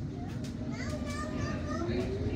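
Low, steady rumble inside a London Underground S7 Stock carriage pulling away from a station, with a slowly rising motor whine starting near the end. Passengers' voices, a child's among them, are heard over it.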